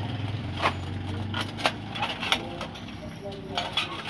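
Sharp metallic clicks and taps from the sheet-metal reflector and rod-retaining strip of an electric room heater as the heating rod is worked loose and pulled out. Under them is a steady low hum that fades about halfway through.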